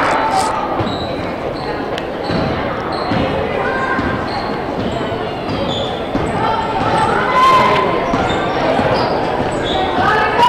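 A basketball dribbled on a hardwood gym floor, with repeated bounces echoing in the large gymnasium, over a background of voices.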